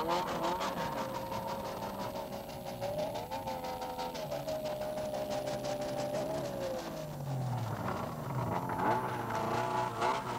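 Snowmobile engine running steadily, its pitch rising and falling as the throttle changes, with a brief rise about three seconds in and a falling drone around seven to eight seconds in.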